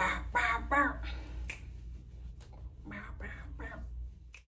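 A woman's voice making short wordless sounds, one group at the start and another about three seconds in, with a few sharp clicks and a steady low hum underneath.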